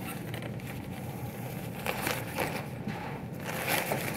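Faint rustling and scraping of a light stand, umbrella and white diffusion fabric being handled and raised, with a few soft knocks in the second half.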